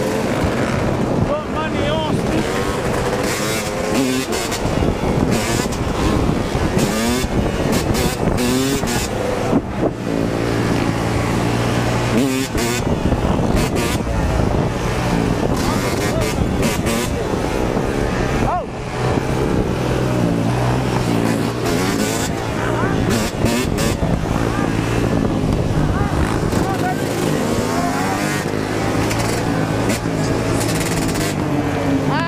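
Several dirt bike and ATV engines running and revving close by, with wind buffeting the microphone of the moving bike.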